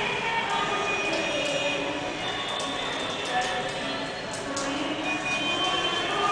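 Many children's voices chattering and calling over one another, a steady babble with no single speaker clear. A few light sharp clicks come in the middle.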